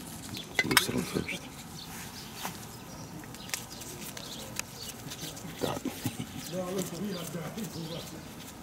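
Small clicks and light metallic clinks from a brass A/C can tapper being screwed onto a refrigerant can and handled. A faint pitched, voice-like sound comes in during the last couple of seconds.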